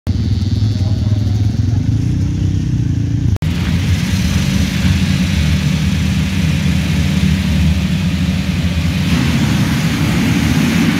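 Motocross dirt bikes' engines. First a nearby bike runs and revs up and back down; after a brief break, a whole start line of bikes revs together in a steady, dense din while waiting for the start.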